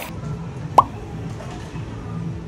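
A single short pop with a quick drop in pitch, a little under a second in, over a steady low hum.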